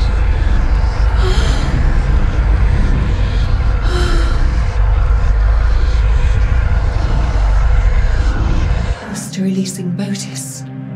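A loud, deep rumbling drone from a horror-film sound effect, with breathy gasps over it. It stops abruptly about nine seconds in and gives way to a sustained, eerie music chord.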